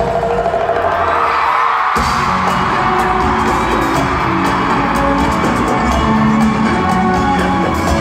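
Live bachata band playing in a large arena, heard through a phone's microphone. For the first two seconds the bass and drums drop out and the crowd screams, then the full band comes back in with a hit about two seconds in.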